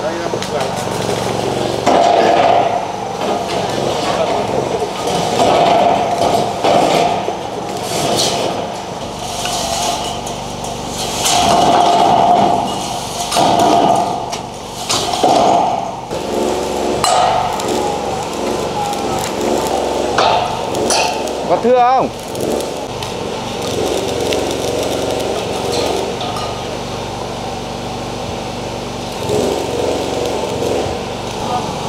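People's voices talking indistinctly, with scattered sharp metallic knocks and clanks from light steel roof framing being handled and fixed in place.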